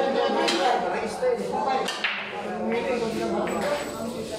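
Pool break shot in 10-ball: the cue ball smashes into the racked balls with a sharp crack, followed by more hard clacks of balls hitting each other and the cushions, about half a second and two seconds in.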